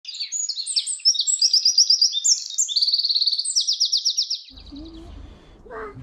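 Birds chirping and trilling together in a busy chorus that stops suddenly about four and a half seconds in, leaving only faint low background noise.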